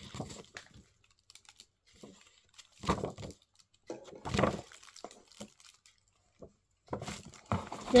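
Paper leaflet being handled and turned over, rustling in two short bursts about three and four and a half seconds in, with faint scattered clicks of handling.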